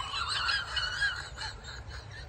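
Birds calling, a run of wavering high notes that dies away near the end.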